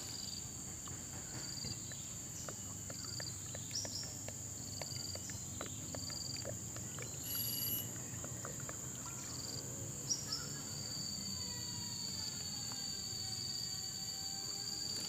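Steady high-pitched insect buzzing, with faint scattered ticks and gurgles in the first half as vinegar is poured from a glass bottle into a plastic bucket of liquid. Near the end a faint tone glides slowly down in pitch.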